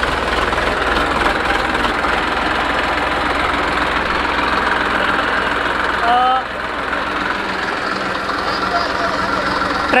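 Farm tractor's diesel engine running steadily as the tractor drives up close.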